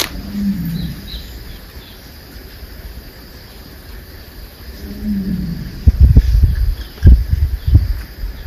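Two low moaning calls from a distant tiger, each falling in pitch, one near the start and one about five seconds in. Near the end, loud low irregular rumbling buffets are the loudest sound. Faint bird chirps sound throughout.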